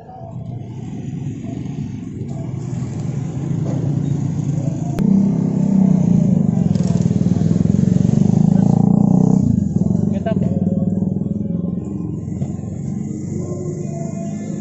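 Roadside traffic noise: a motor vehicle engine running close by, growing louder about a third of the way in and dropping off suddenly a little past two-thirds, with voices in the background.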